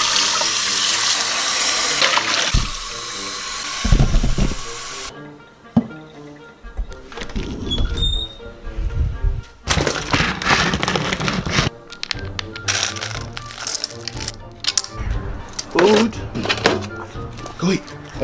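Kitchen faucet running into a stainless-steel bowl, filling it, for about five seconds before cutting off abruptly. Background music with a beat follows.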